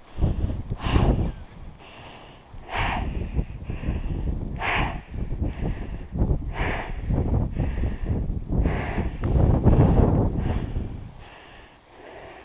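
Hard, effortful breathing, a heavy breath about every two seconds, with snow crunching and shifting as someone struggles to get up after a fall in deep snow on snowshoes.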